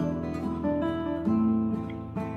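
Background music of a strummed acoustic guitar playing chords, with a chord change a little past the middle.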